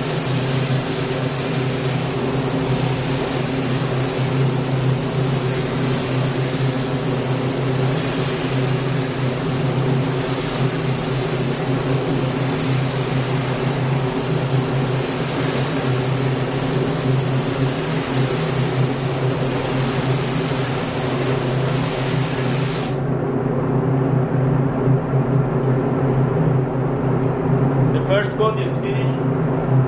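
Air spray gun hissing steadily as clear coat is sprayed onto a car's door and fender; the spray stops abruptly about 23 seconds in when the trigger is released. A steady low machine hum runs underneath throughout.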